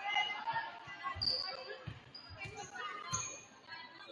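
Volleyball bouncing on a gym floor, a few thuds about a second apart, over voices echoing in the gym.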